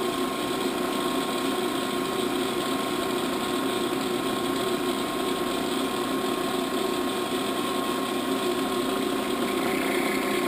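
Clausing Kondia CNC vertical knee mill running: a steady mechanical whir with a constant hum in it, unchanging throughout.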